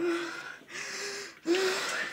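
A person making three short, high-pitched vocal cries in a row, each held about half a second between quick breaths, in a frightened, pleading manner.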